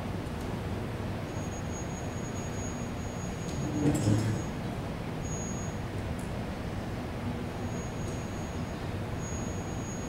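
Steady room noise hiss during a pause in speech, with a faint high-pitched whine that comes and goes. A brief louder sound comes about four seconds in.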